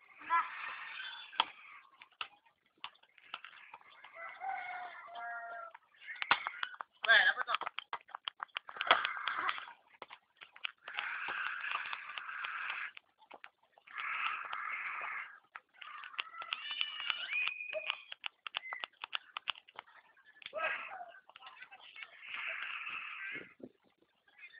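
Futsal game sounds: bursts of players' voices and calls, mixed with many sharp knocks from the ball and feet on the court.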